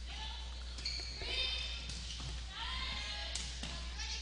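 Echoing gym during a volleyball rally: distant voices of players and spectators calling out, with faint thuds of the ball being played, over a steady low hum.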